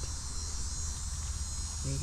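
Steady, high-pitched chorus of insects, over a low steady rumble.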